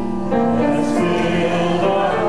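Congregation singing a hymn with piano accompaniment, the voices coming in strongly about a third of a second in after the piano introduction.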